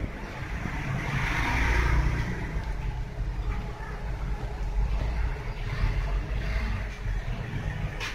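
Steady low rumbling background noise with a hiss that swells about one to two seconds in.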